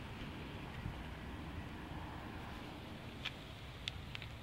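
Quiet outdoor background rumble, steady and low, with two faint clicks near the end.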